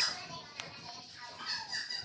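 A child's voice faintly in the background, calling out and telling someone to go outside.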